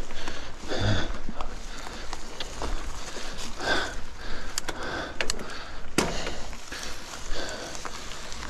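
Mountain bike ridden uphill on dirt forest singletrack: tyre noise and small rattles and clicks from the bike, with the rider's breaths every few seconds. One sharp click comes about six seconds in.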